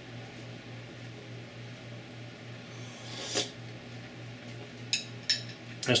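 A steady low hum throughout, with one short slurp of soup from a spoon a little past halfway and two faint clicks near the end.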